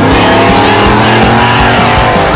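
Racing fire truck's engine revving hard as it pulls away from the line, with background music underneath.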